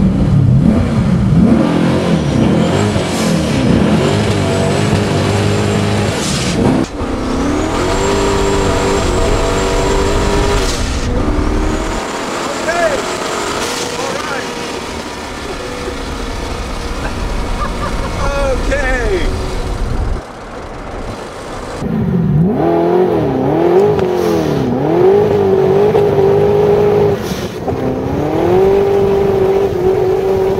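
1969 Camaro's 572 cubic inch twin-turbo big-block V8 pulling hard through the gears, the revs climbing and dropping back at each shift, with a high turbo whistle during the pulls.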